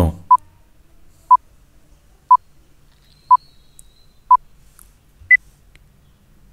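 Countdown timer beeps: five short beeps at one pitch, one second apart, then a single higher beep marking the end of the count.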